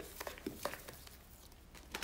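Faint, soft squishing with a few light ticks, mostly in the first second, from a hand mixing chia seeds into a wet zucchini batter in a plastic bowl.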